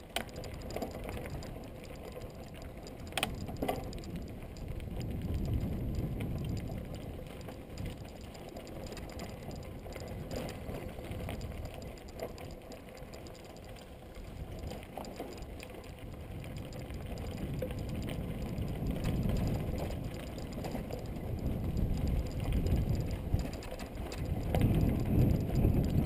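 Mountain bike rolling over a dry dirt singletrack, picked up by a camera mounted on the bike: a continuous low rumble and rattle from the tyres and bike jolting over the trail, rising and falling with the terrain, with a couple of sharp knocks a few seconds in and louder jolting near the end.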